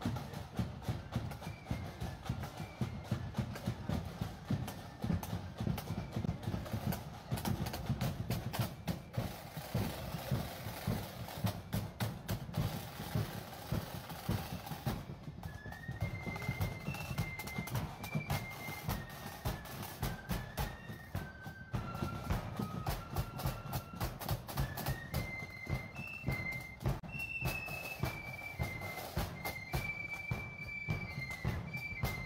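Marching flute band: the drums beat a steady march rhythm, and about halfway through the flutes come in with a high, stepping melody over the drums.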